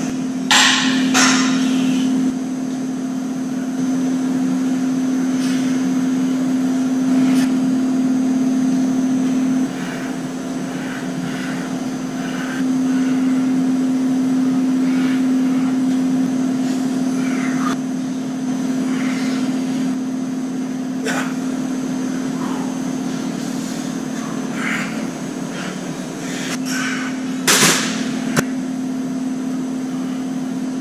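A steady low mechanical hum that shifts its loudness in a few steps, with a handful of sharp clicks and knocks, the loudest near the end.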